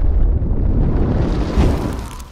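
Rumbling explosion sound effect of a fireball blast, heavy in the low end, with a second hit about one and a half seconds in before it starts to fade.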